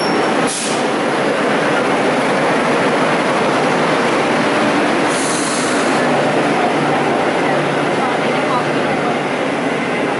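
Barcelona metro train at the platform, a steady loud noise of the train, with a brief high hiss about five seconds in.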